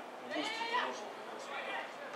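Men's voices shouting out on an open football pitch: one loud, high call about half a second in, and a shorter one near the end.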